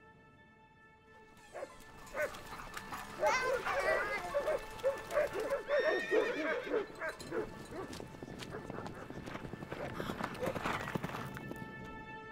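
Dogs, cattle and horses moving about a muddy field: hoofbeats and rustling, with a run of quickly wavering high calls from about three to seven seconds in. A steady held musical tone stops just after the start and comes back near the end.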